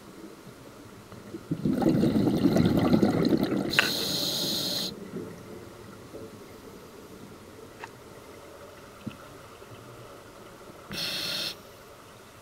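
Scuba regulator breathing underwater: a loud bubbling exhalation from about a second and a half in, followed straight away by the hiss of an inhalation through the regulator, and another short inhale hiss near the end.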